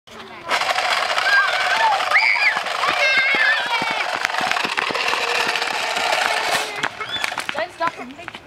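A motorised toy truck runs across asphalt with a loud, steady buzzing rattle that starts suddenly about half a second in and cuts off near the end, with scattered clicks from its wheels on grit. High-pitched voices sound over it.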